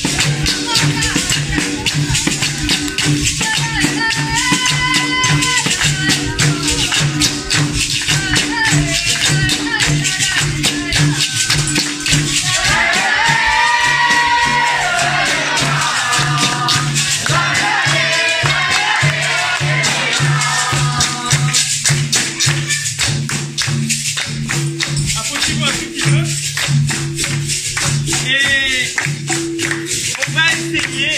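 Capoeira roda music: berimbaus playing repeated low notes with the shake of caxixi rattles, an atabaque drum and a pandeiro, with hand-clapping and voices singing a capoeira song.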